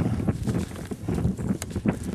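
Irregular knocks and rustling close to the microphone.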